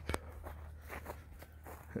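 Faint footsteps on a grass path, a few soft scattered steps.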